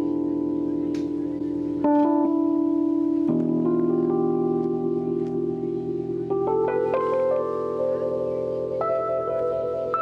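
Keyboard music: slow held chords that change every couple of seconds, with higher single notes coming in over them in the second half.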